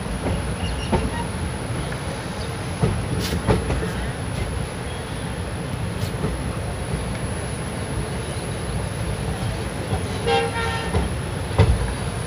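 Passenger train running round a curve, heard from the open door of a coach: a steady rumble of wheels on track with occasional sharp clicks from the rail joints. A short horn toot sounds about ten seconds in.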